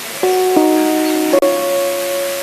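Keyboard playing held chords in a slow background accompaniment, the notes sustained without fading and the chord changing about a quarter second in, again at about half a second, and once more near the middle.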